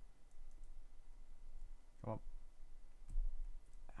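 Small plastic LEGO Technic parts clicking faintly as they are handled and a pin is pushed through a hole, with a low thump about three seconds in.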